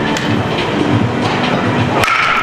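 A bat strikes a pitched baseball with a sharp crack near the start, over the steady rumbling, clattering noise of a batting cage.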